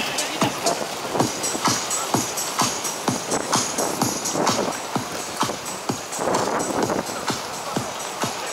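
Music with a steady beat, about two beats a second.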